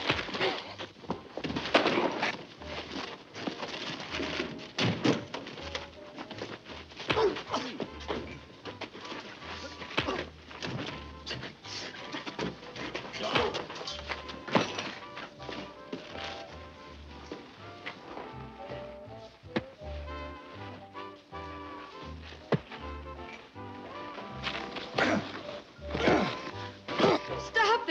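A fistfight: repeated punches and thuds with scuffling, over a dramatic film score. The blows come thick early on; the music comes forward over the later part.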